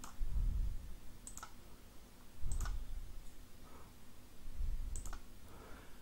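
A handful of sharp computer mouse clicks, spaced about a second apart, with dull low thumps in between.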